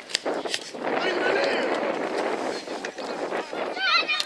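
Young children shouting and calling out, several voices overlapping, with a couple of sharp knocks in the first second.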